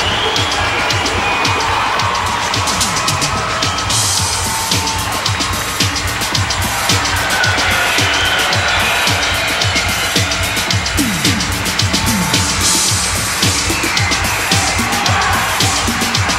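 Live pop band music playing over the arena PA with a steady drum beat, the audience cheering and shouting over it.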